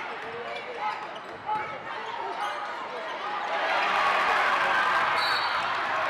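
Basketball dribbled on a hardwood gym floor over the chatter of a crowd in the bleachers. About three and a half seconds in, the crowd noise swells louder.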